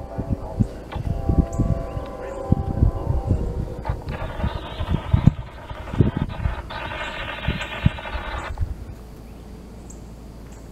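Distant CSX diesel locomotive's air horn sounding as the train approaches: a long blast in the first two seconds, then another from about four seconds in that breaks briefly and ends around eight and a half seconds in. Irregular low thumps run under it.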